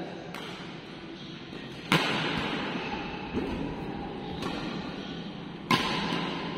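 Badminton rackets striking a shuttlecock during a doubles rally: sharp cracks that echo in the hall, the two loudest about two seconds in and near the end, with fainter hits between.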